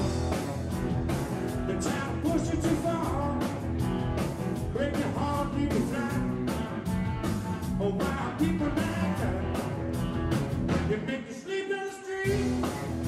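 Live blues-rock trio playing: electric guitar, electric bass and drum kit, with gliding, bent guitar notes over a steady drum beat. The band drops out briefly just before the end, then comes back in.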